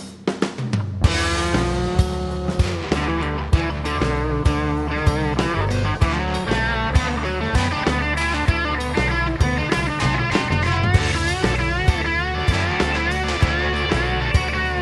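Live band playing an instrumental break, led by an electric guitar bending its notes over bass and a drum kit keeping a steady beat. The band drops back briefly at the start, then comes in full about a second in.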